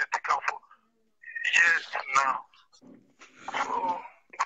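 A man sneezing: a loud voiced burst about a second in, then a second, noisier one near the end, with speech just before.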